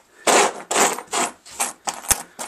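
Small square steel tabs slid and shuffled by hand across a wooden bench top, scraping on the wood and clinking against each other in about four short strokes.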